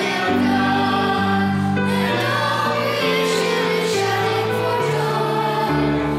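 Children's choir singing a hymn over held, slowly changing chords: the entrance hymn that opens the Mass.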